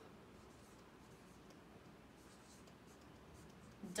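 Faint strokes of a dry-erase marker writing on a whiteboard, several short scratchy strokes one after another.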